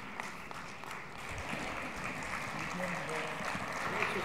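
Audience applauding steadily, swelling slightly near the end.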